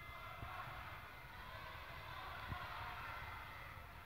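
Quiet sports-hall ambience: a low rumble with a faint murmur of distant voices, and a couple of dull thumps, about half a second in and again midway.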